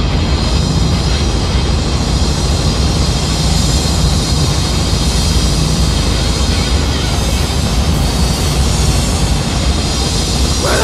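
Hardcore punk played from a vinyl LP on a turntable: a loud, unbroken wall of distorted guitar, bass and drums.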